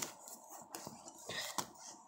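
Faint handling noise: soft rustling of fabric and a few light knocks as dolls and the phone are moved about, with the clearest taps about a third of the way in and near the end.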